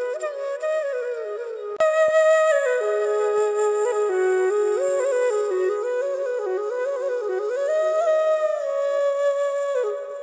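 Background music: a slow, ornamented melody on a flute-like wind instrument, with notes sliding into one another. It jumps suddenly louder about two seconds in.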